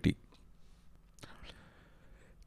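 A pause in male narration: a word trails off at the start, then near silence with one faint, short breath about a second and a quarter in.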